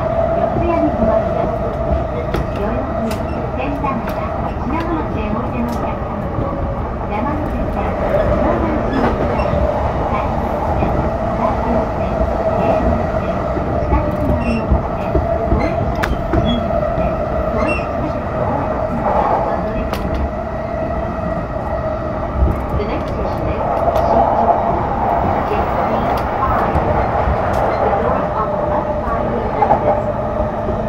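A JR East E233 series 0 electric train running, heard from on board: a continuous rumble of wheels on rail with a steady hum and scattered sharp clicks.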